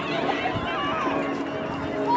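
Several voices of sideline spectators and players calling and shouting over one another during play, with one voice holding a long call in the second half.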